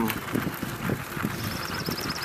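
Low rumble and hiss of wind and handling on a handheld camera's microphone outdoors. About two-thirds of the way in, a bird starts a rapid, high trill of roughly a dozen notes a second.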